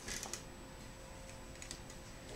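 Light handling clicks from a hand-held metal staple gun set down on the wooden chair seat base and taken up again, with the rustle of curtain fabric being pulled tight: a cluster of clicks at the start and a few faint ticks near the end.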